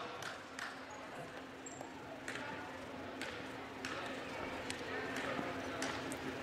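Basketball bounced several times on a hardwood gym floor by a player at the free-throw line, over a low murmur of crowd voices in the gym.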